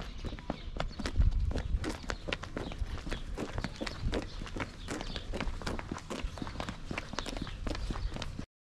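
Footsteps of several people walking briskly on a gritty road surface: quick, irregular crunching steps, several a second, with a brief low rumble a little after a second in.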